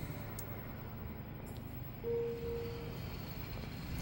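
Low, steady background rumble of motors running outside, which the owner puts down to neighbours mowing their lawns. A single steady tone joins it about two seconds in and lasts about a second.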